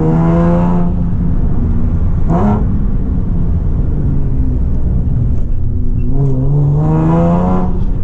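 Nissan Z sports car's V6 engine and exhaust heard from inside the cabin while driving, pulling up through the revs. The note climbs, gives a quick short rise about two and a half seconds in, then runs lower before climbing again near the end.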